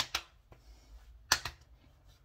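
Open palms slapping aftershave splash onto the cheeks: two quick pairs of sharp slaps, one at the start and a louder pair about a second and a third in.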